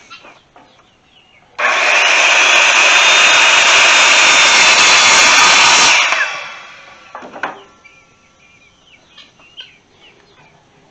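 Handheld circular saw starts abruptly and cuts through a wooden board for about four seconds, then winds down as the blade coasts to a stop.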